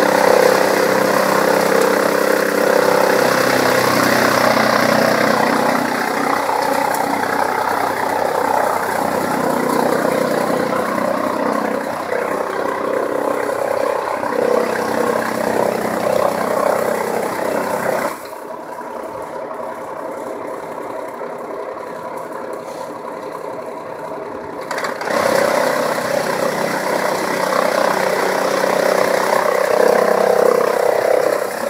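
A chaff cutter with a blower running steadily, chopping dry crop stalks into fodder and blowing the chopped material out of its chute. About two-thirds of the way through, the level drops and the hissing part of the sound falls away for several seconds, then returns.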